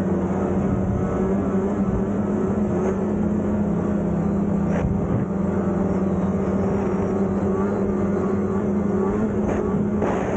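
Snowmobile engine running at a steady cruising speed, a loud, even drone that holds its pitch. A couple of faint ticks come through about five seconds in and again near the end.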